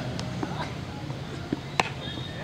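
A cricket bat striking the ball once, a sharp knock near the end, over a steady low hum.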